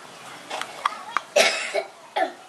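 A single short cough about a second and a half in, after a few light clicks of fingers handling a plastic makeup compact.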